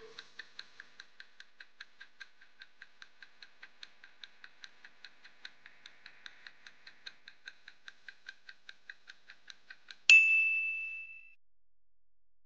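Countdown timer sound effect: clock-like ticking at about five ticks a second for ten seconds, then a loud single ding that rings for about a second, signalling that time is up.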